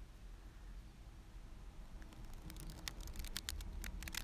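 Tarot deck being riffle-shuffled. After a quiet pause, a quick run of soft card clicks begins about halfway through as the two halves riffle together.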